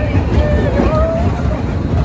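Wind buffeting the microphone as a small kiddie roller coaster car runs along its track, heard as a steady low rumble. A few short high-pitched squeals come over it in the first half.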